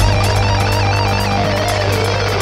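Instrumental metal music: a lead electric guitar plays a slow melody with wide vibrato that steps downward over a held low bass note.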